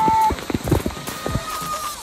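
Water from a splash-play structure falling and splashing down onto people and the phone, in a dense, irregular pattering like heavy rain with sharp splatters on the microphone. A shriek ends just after the start.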